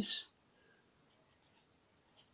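Faint, brief scratches of a marker pen writing a dot and a digit on paper, heard a few times in the first half.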